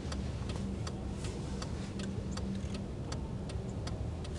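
City street noise: a steady low rumble with a held low hum, and sharp, uneven clicks about four times a second.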